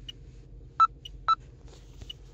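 Electronic beeps from a falconry GPS telemetry receiver: two short high-pitched beeps about half a second apart in the second half, with a few fainter tiny blips, over a faint low background hum.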